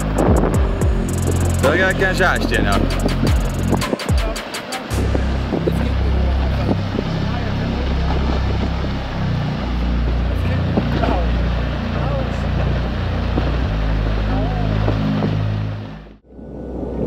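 Large rockfall on a forested mountainside: a continuous deep rumble of tumbling rock, with sharp knocks and a person's shouts in the first few seconds.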